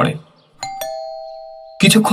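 Two-note ding-dong doorbell chime, the second note lower, ringing on and fading for about a second after it is pressed.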